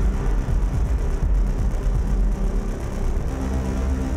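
Live electronic noise music: a loud, dense, continuous wall of sound over a heavy, deep bass rumble.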